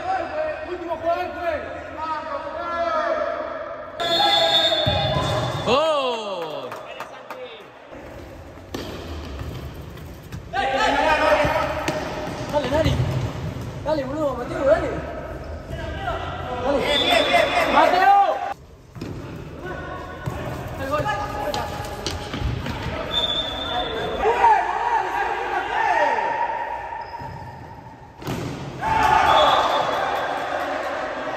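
Men's voices calling and shouting across an indoor futsal court, with the ball being kicked and bouncing on the hard floor, echoing in a large gym hall. The sound changes abruptly several times.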